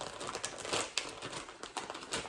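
Thin clear plastic bag crinkling in the hands as it is handled and opened: a run of small, irregular crackles.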